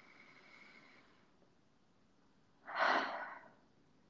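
A woman's slow deep breath: a faint inhale in the first second, then a louder, breathy exhale near the end that fades away over under a second.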